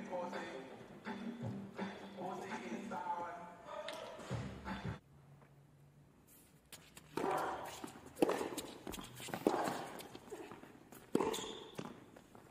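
A tennis ball being struck and bouncing during a rally, heard as sharp knocks roughly every second in the second half. In the first few seconds there are indistinct voices.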